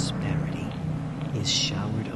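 Soft whispered speech, with one sharp hissed 's' about one and a half seconds in, over a low steady hum.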